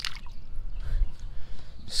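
A short splash as a hand releases a small panfish into the lake water, followed by a low rumble.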